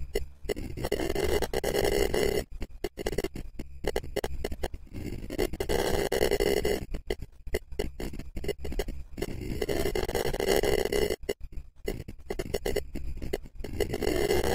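Scary 'alien stutter' horror sound effect: a rapid, choppy stutter broken by many short gaps, alternating with louder, denser passages, the pattern repeating about every four and a half seconds.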